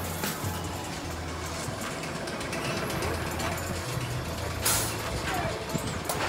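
Outdoor crowd ambience with faint voices, under a deep bass line that steps from note to note about once a second, typical of background music. A short, sharp hiss comes about five seconds in.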